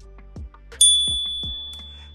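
A single bright bell-like ding about a second in, ringing out and fading over a quiet background music bed, with a few low falling swoops around it.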